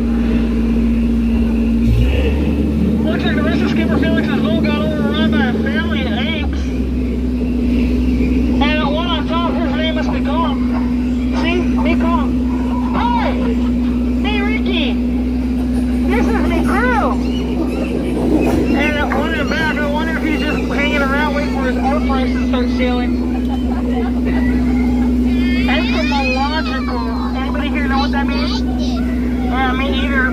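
Steady low hum and rumble of the tour boat's motor. Over it run voices or calls whose pitch wavers rapidly, on and off.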